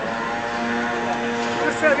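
A steady machine drone holding one even pitch, stopping just before the end.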